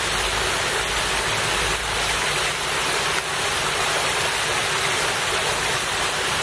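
Steady rush of water splashing in a public fountain, an even hiss with no breaks.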